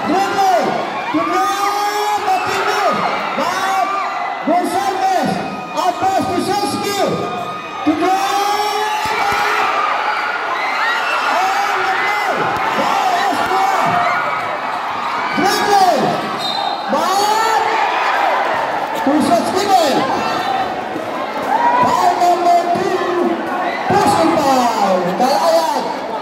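Live basketball game on a concrete court: the ball dribbling and bouncing, over a large crowd's noise, with many short shouts from players and spectators.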